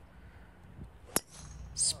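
Driver striking a golf ball off the tee: a single sharp crack about a second in.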